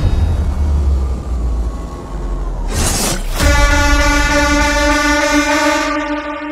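Trailer sound design: a deep rumble with a faint falling tone, a short whoosh about three seconds in, then a single sustained horn-like blast that holds steady to the end.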